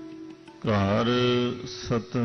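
Faint instrumental music, then about two-thirds of a second in a man's voice starts a long chanted note of Gurbani recitation, its pitch sliding down at the start. The note breaks off briefly near the end and is taken up again.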